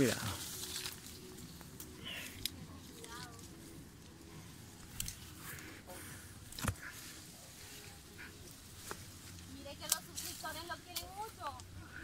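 Caimito tree leaves and twigs rustling and clicking faintly as someone moves among the branches, with one sharper snap about halfway through. A woman's voice calls faintly from a distance near the end.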